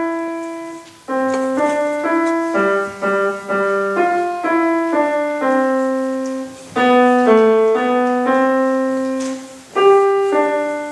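Grand piano playing a simple, slow tune: single melody notes over lower notes, about two a second. The notes come in short phrases with brief breaks between them.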